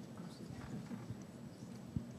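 Faint room tone of a large hall with soft scattered knocks and rustles of microphones being handled.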